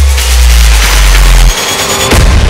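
A deep, distorted bass rumble with noise above it, a trailer-style sound effect, cutting off sharply about one and a half seconds in.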